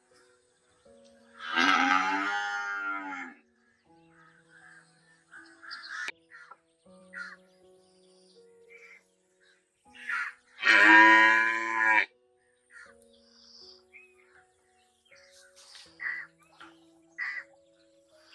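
A cow mooing twice, each a loud call lasting a second or two, about a second and a half in and again about eleven seconds in. Short crow caws come in between.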